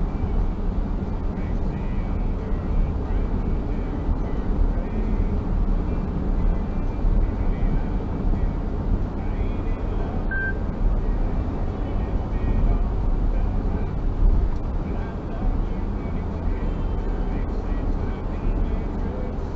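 Steady low rumble of a car's tyres and engine at about 80 km/h, heard inside the cabin.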